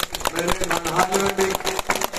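Crowd clapping: a dense, rapid patter of many hands, with a man's voice heard under it.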